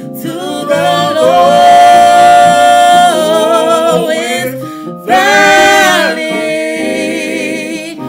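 A woman and a man singing a gospel song together, with long held notes and vibrato and a short break about five seconds in.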